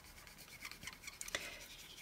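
Faint rubbing and scratching of a fine-tip glue bottle's needle tip drawn along a cardstock glue tab, with a few light ticks.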